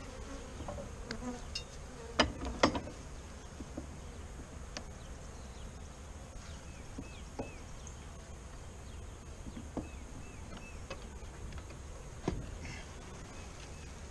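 A Saskatraz honeybee colony buzzing steadily from the opened hive. A few sharp knocks come through: two close together a couple of seconds in and one near the end.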